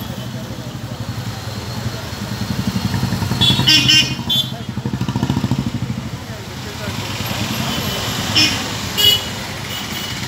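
Busy street traffic, with scooters and motorcycles running past. Short horn toots sound around four seconds in and twice near the end.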